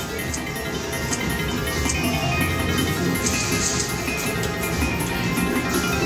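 Video slot machine playing its steady electronic win music as the win meter counts up after a line hit.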